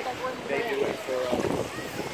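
Indistinct talking voices over water sloshing at the microphone, with some wind noise.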